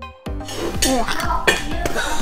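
Background music with a steady beat; about a third of a second in, the clink of plates and cutlery on a dinner table joins it, with voices underneath.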